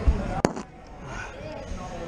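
A low thump and then one sharp click from a climber and their gear against an indoor climbing wall, with faint voices in the background.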